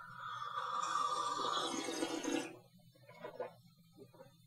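A person slurping a sip of tea from a small tasting cup: one long, airy slurp lasting about two and a half seconds.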